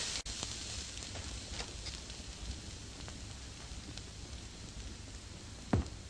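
A steady hiss with a few faint clicks, and one short thump near the end.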